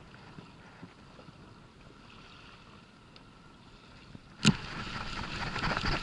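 Faint steady wind and water noise, then about four and a half seconds in a sharp knock followed by louder, busier handling noise as the baitcasting reel is cranked in fast.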